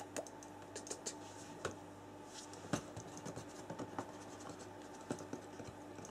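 Faint, irregular scratching and light clicks, scattered across the few seconds, over a low steady hum.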